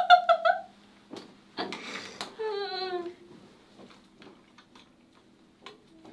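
Off-camera young woman's voice: a quick run of short pitched syllables like laughter right at the start, a brief rustle, then one drawn-out vocal sound sliding down in pitch. Faint scattered clicks follow over a steady low hum.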